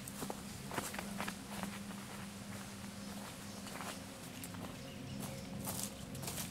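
Footsteps on a dry forest trail, crunching irregularly through fallen leaves and twigs.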